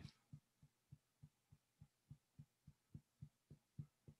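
Faint fingertip taps on the face in a steady rhythm, about three and a half a second: EFT tapping on an acupressure point.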